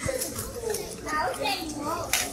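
Several children talking and calling out.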